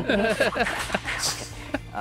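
A man talking, with laughter breaking in over the speech.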